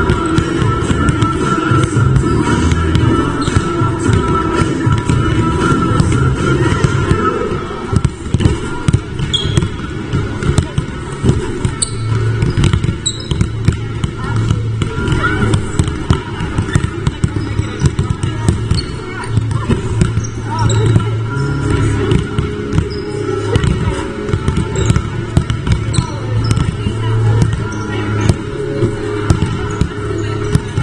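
Several basketballs bouncing on a wooden sports-hall court during warm-up, many irregular thuds overlapping, over background music and voices.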